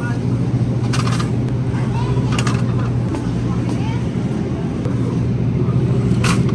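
Steady low hum of supermarket refrigerated display cases, with a couple of short sharp clicks and rattles as items go into a wire shopping basket.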